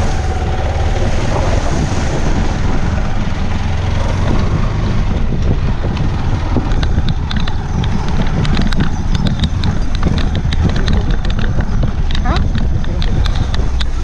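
Motorcycle being ridden, its engine running under a steady rush of wind on the microphone. From about halfway, gravel clicks and crackles under the tyres.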